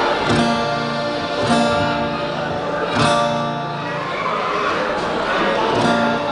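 Acoustic guitar strumming single ringing chords, three strong strums about a second and a half apart and a softer one near the end, with voices talking over it.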